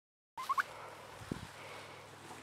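Turkey calling: a quick run of three short rising notes about half a second in, over a steady outdoor background. A single low thump follows a little after a second.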